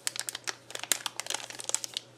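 Small clear plastic bags of spare glass fuses crinkling as they are handled: a quick run of irregular crackles.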